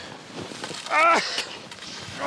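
A person's short wordless cry about a second in, its pitch falling as it goes, over a light hiss of outdoor noise.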